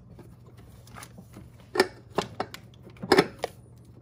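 A few sharp clicks and knocks of hard parts meeting as a fuel filter component is worked back up into its housing and seated. The loudest come about two seconds in and again a little after three seconds.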